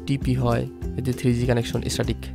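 Background music with steady held notes, with a voice speaking briefly over it.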